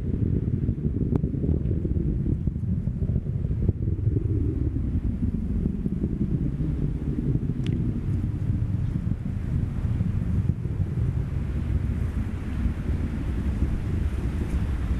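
Deep, steady rumble of a Falcon 9 rocket's nine Merlin first-stage engines heard from the ground as it climbs away, mixed with wind noise on the microphone.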